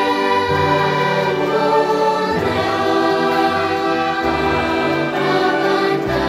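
Choir singing a Catholic hymn in held chords, the harmony and the low notes shifting every second or two.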